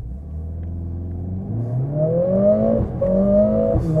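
Mercedes-AMG CLA 45 S's turbocharged 2.0-litre four-cylinder under full-throttle acceleration from low speed in Sport Plus mode, heard from inside the cabin with its sound module active. The engine note holds low for a moment, then climbs steadily, breaking briefly at two quick automatic upshifts about three quarters of the way through and near the end, and keeps rising and getting louder.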